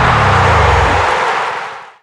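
A sustained, noisy roar over a low bass note, the soundtrack's closing swell, fading out to silence over the last second.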